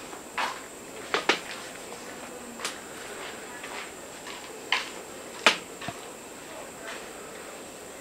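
Quiet room tone with a steady faint high hiss, broken by a handful of short sharp clicks at irregular intervals, the loudest about five and a half seconds in.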